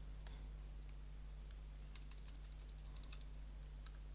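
Computer keyboard typing: a single click early on, then a quick run of keystrokes in the middle and a couple more clicks near the end, as a file name is typed in. A faint steady low hum sits underneath.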